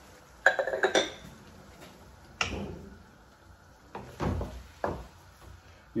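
Kitchenware being handled at the stove. There is a quick run of ringing clinks about half a second in, then a single sharp clink, and a few duller knocks near the end.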